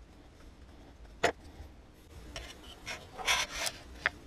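Small piece of pallet wood being handled and worked off a drill bit by hand: wood rubbing and scraping, with one sharp knock about a second in and a run of louder scrapes in the second half. The drill is not running.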